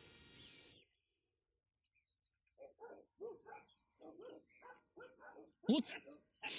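A dog barking, a quick run of about eight short barks starting about two and a half seconds in.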